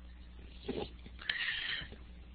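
Faint breath and mouth sounds from a person: a brief low sound a little under a second in, then a small click and a short hissing breath about a second and a half in, over a low steady hum.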